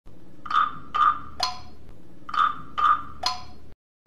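A short three-note chime, two notes at the same pitch and then a lower one, played twice as an intro jingle.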